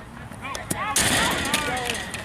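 Several voices shouting and calling out on a baseball field as a high pitch gets past the catcher, with a loud, noisy burst about a second in.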